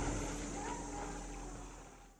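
Open-air ambience on a boat in a calm lagoon: a steady low hum over an even hiss of wind and water, fading out near the end.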